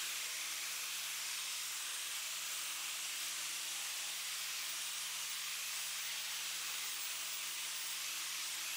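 Angle grinder driving an Arbortech Contour Sander, running steadily while it sands red gum at fine grit: a faint, even hiss over a steady low motor hum.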